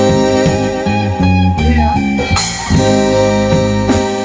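A small rock band playing live, led by electric guitar over electric bass, drums and keyboard.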